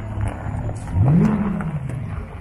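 A car engine idling, then revved once about a second in: the pitch rises sharply and falls back slowly toward idle.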